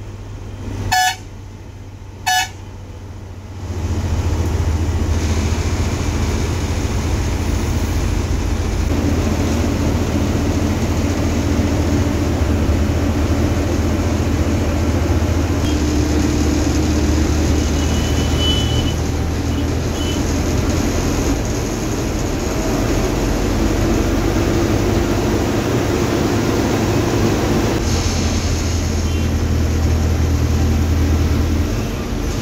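Two short horn toots in the first few seconds, then the steady low rumble of a moving bus's engine and road noise inside the cabin. The rumble swells about four seconds in and then holds.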